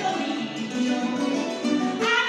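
Guitar playing an instrumental passage of a Latin American folk song, plucked notes moving in the middle register between sung lines.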